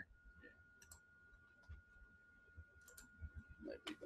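Near silence with a few faint, sharp computer mouse clicks spread through the pause, over a faint steady high tone.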